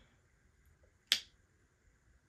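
A single short, sharp click about a second in, in an otherwise quiet small room.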